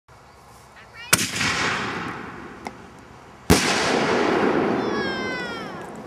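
Consumer fireworks going off: two sharp bangs about two and a half seconds apart, each followed by a long fading rush of noise, with a small pop between them and a falling whistle near the end.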